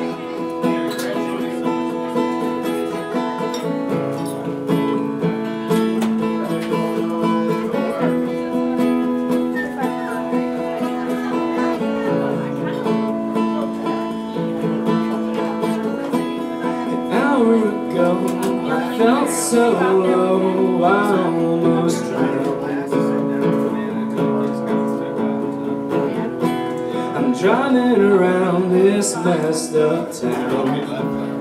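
Acoustic guitar played live, its chords ringing and changing every two to four seconds, with voices heard in the room at times.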